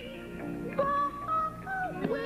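Male gospel quartet singing live through a PA: a lead voice holds long, wavering notes over lower backing harmonies.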